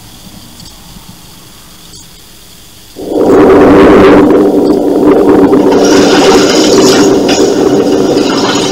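Quiet VHS tape hiss, then about three seconds in a sudden loud, sustained rushing, droning sound effect from the movie trailer's soundtrack begins, growing brighter and hissier about three seconds later.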